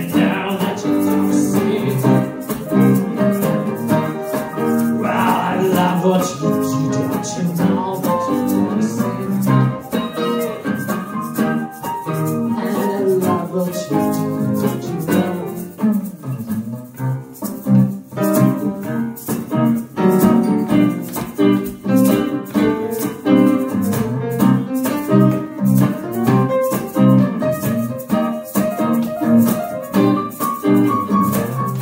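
Instrumental passage on electric guitar and piano, with no vocals, the guitar picked in a steady rhythm over the piano.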